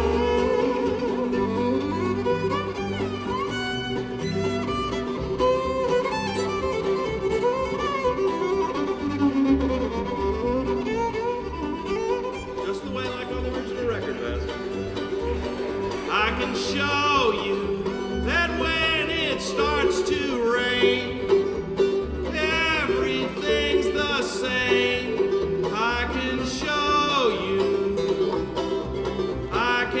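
Acoustic bluegrass band playing live, the fiddle standing out over mandolin, banjo and guitar.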